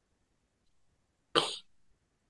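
A single short cough, about one and a half seconds in, against near silence.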